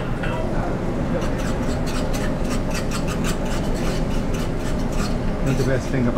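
A metal fork stirring and scraping scrambled eggs in a small nonstick frying pan: a quick run of small scratchy clicks, several a second, starting about a second in. Underneath runs a steady low hum of kitchen ventilation.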